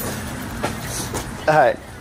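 A steady noisy background at moderate level, with a short burst of a person's voice about one and a half seconds in.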